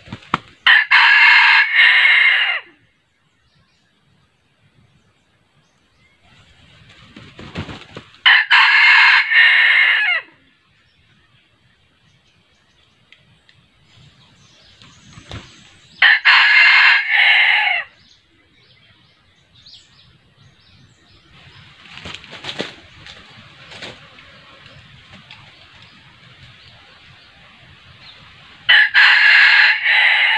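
Red junglefowl rooster crowing four times, about every seven to eight seconds. Each crow is short, about two seconds, and cuts off abruptly.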